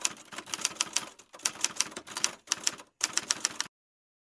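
Typing sound effect: a fast run of key clacks, about five or six a second with a few short breaks, cutting off abruptly near the end.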